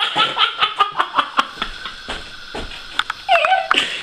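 A man laughing heartily in quick, rhythmic bursts of about five a second, then a short vocal sound near the end.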